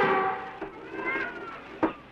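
A long drawn-out call that wavers up and down in pitch and fades out, then a second, shorter call, and a single sharp click near the end.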